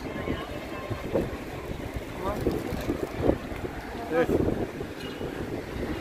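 Busy city-street ambience: a steady rumble of traffic with wind buffeting the microphone, and passers-by talking faintly now and then.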